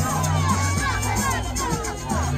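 Amapiano dance music with deep, held bass notes, under a crowd shouting and cheering with many short, rising and falling yells.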